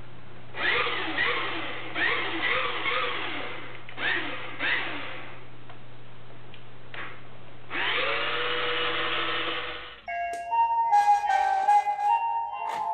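Whine of a 1/32-scale radio-controlled model bus's small electric drive motor and gears, in short bursts that rise and fall in pitch as it drives off and stops, then one longer, steadier run. A steady low hum sits under it. Music starts about ten seconds in.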